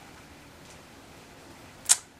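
Quiet room tone, broken near the end by one brief, sharp hiss.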